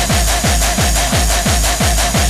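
Gabber (Dutch hardcore techno) track: a kick drum beating about four times a second, each hit dropping in pitch, with a short repeating synth riff over it.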